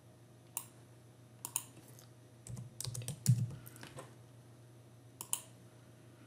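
Scattered keystrokes on a computer keyboard: single taps with a short burst of clicks and a soft low thump in the middle, over a faint steady hum.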